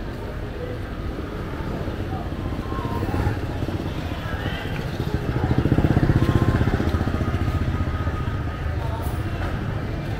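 Street traffic with a motorbike engine passing close by, growing louder to a peak about halfway through and then easing off, over faint voices.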